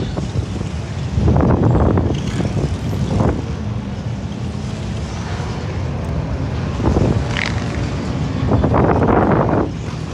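Wind buffeting the microphone of an onboard camera on a swinging reverse-bungee ride capsule. It comes in loud gusts about a second in, near three seconds, around seven seconds and again near nine seconds.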